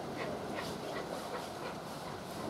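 Distant exhaust beats of 35028 Clan Line, a Merchant Navy class steam locomotive, working hard with its train: short, uneven puffs several times a second over a steady hiss of rain.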